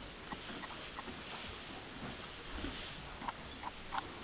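Faint, scattered short knocks and rustling from a horse shifting about in a straw-bedded stall, with a few knocks about a second in and a small cluster near the end.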